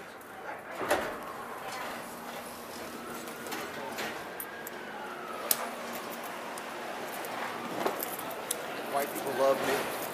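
Airport people-mover shuttle train running, heard from inside the car: a steady rumble with a faint whine that rises and then falls, a few clicks, and passengers' voices in the background.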